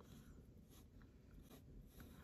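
Faint scratching of a pencil on paper, with a few soft strokes, as an outline is sketched.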